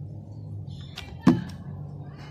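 A hot glue gun being put down on the wooden floor: one sharp hard knock about a second in, with a couple of lighter clicks just before and after it, over a steady low hum.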